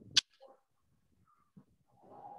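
One short, sharp click just after the start, then near silence with only faint scattered traces.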